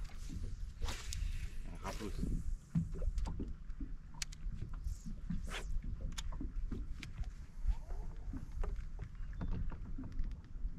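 Water lapping against a bass boat's hull, with a low steady rumble and scattered light clicks and knocks.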